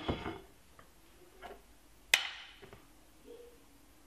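Kitchenware being handled: a few light knocks and one sharp, briefly ringing clink about two seconds in, as a stainless steel mesh strainer and a small glass bowl are set down on the board.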